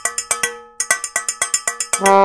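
A rapid, even run of sharp ringing percussion taps, about eight a second, each ringing at the same few pitches, with a brief break about half a second in; a comic soundtrack cue.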